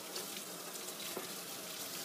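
Tap water running steadily over steel manicure nippers in a perforated plastic basket and into a stainless steel sink, rinsing off disinfectant residue.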